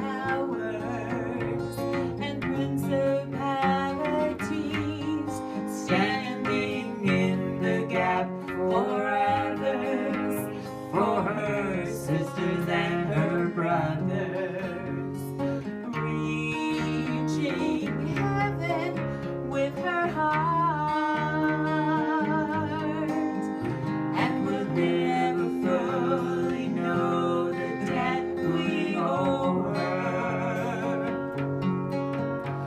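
Two acoustic guitars strumming and picking a song while a woman sings lead into a microphone, holding some notes with vibrato.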